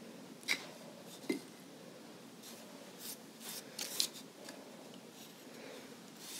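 A few faint, light clicks and taps as a pastry brush is worked in a small ceramic bowl of egg wash.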